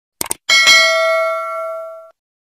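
Subscribe-button notification-bell sound effect: a quick click, then a bell ding struck twice in quick succession that rings out and fades over about a second and a half.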